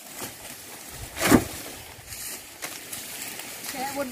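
Dry sugarcane stalks and leaves rustling and knocking as they are handled, with one short, louder crash about a second in.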